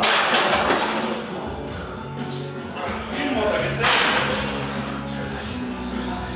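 Men shouting during a heavy bench press, with two loud outbursts, the first at once and the second about four seconds in, over background music. A faint metallic clink comes from the loaded barbell and its plates as it goes back into the rack.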